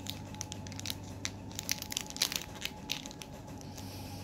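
Foil wrapper of a Pokémon booster pack crinkling and tearing in short, irregular crackles as it is worked open by hand, without scissors.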